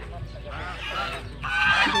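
Domestic geese honking: a run of short calls, the loudest near the end.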